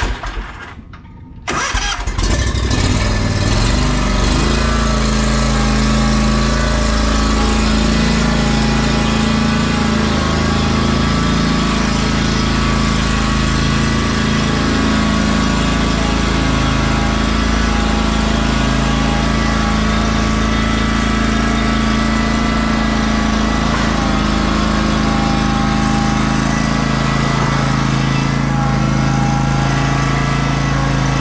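Exmark Vantage stand-on mower's engine cranking and catching about a second and a half in, then running steadily while the mower is driven. A short knock right at the start.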